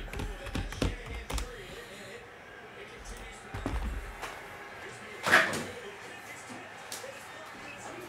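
Light knocks and clicks of things being handled on a desk, several in quick succession in the first second and a half, then a dull low thump near the middle and a short loud noise a little past five seconds.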